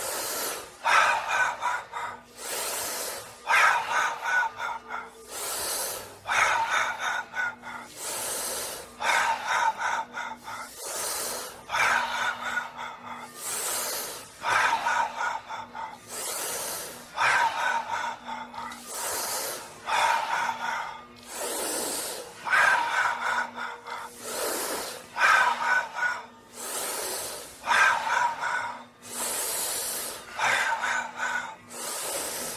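Loud rhythmic breathing exercise: a sharp hissing breath followed by a breathy voiced sound, repeating about every two seconds.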